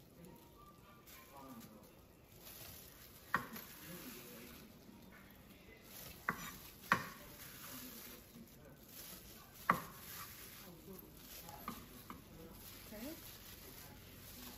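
Kitchen knife slicing kielbasa sausage on a wooden cutting board, the blade knocking on the board in a few sharp, irregular strikes, four of them louder than the rest.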